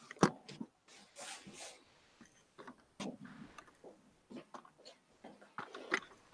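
Scattered clicks and short rustling bursts of handling noise picked up by an open video-call microphone, with one sharp click just after the start.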